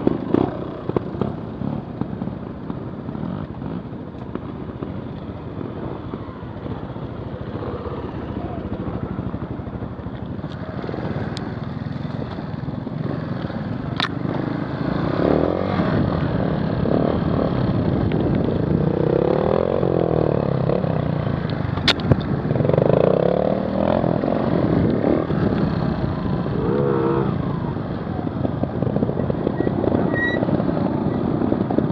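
Trials motorcycle engine heard close from the rider's helmet camera, its revs rising and falling as the bike rides a dirt trail, with rattle and wind noise. Two sharp clicks, about midway and about two-thirds of the way through.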